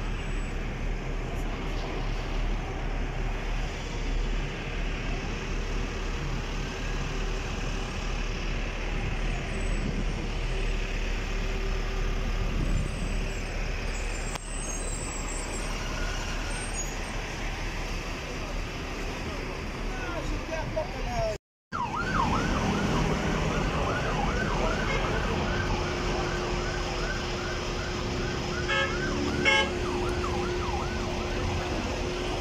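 Crowd and road noise, then after a sudden break about two-thirds through, an emergency vehicle siren in a fast yelp, rising and falling about twice a second, with a steady tone under it near the end.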